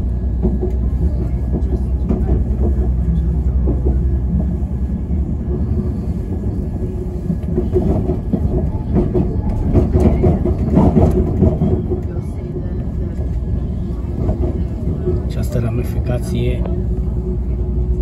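Passenger train in motion heard from inside the carriage: a steady rumble of the wheels on the track with an even hum. It grows louder and rougher for a few seconds in the middle.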